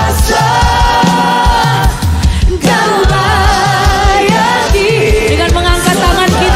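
Live worship music: a lead singer and backing vocalists singing in Indonesian over a band with a steady beat, the sound dipping briefly about two seconds in.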